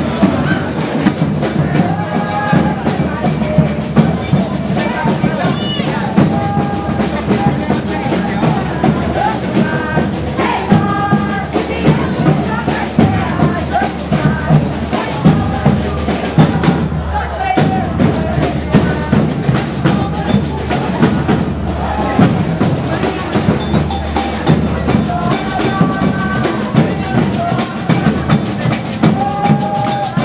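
A street parade drum band, snare and bass drums, playing a steady dance beat with a melody line over it.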